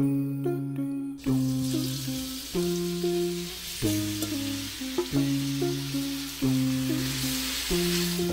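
Marinated beef cubes sizzling in hot oil in a frying pan, the sizzle starting suddenly about a second in as the meat goes in and then holding steady.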